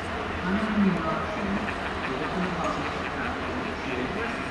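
A steam locomotive moving slowly through the station with a steady low rumble, under people's voices talking close by.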